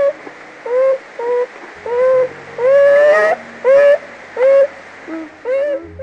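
A bear calling: a run of about eight short, high whining calls, each rising slightly in pitch, with one longer call in the middle.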